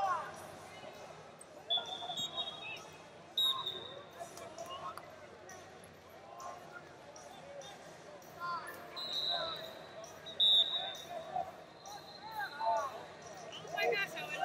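Wrestling tournament hall: shoes squeaking on the mats, voices talking and calling out across the hall, and several short high whistle tones, the loudest about two-thirds of the way through.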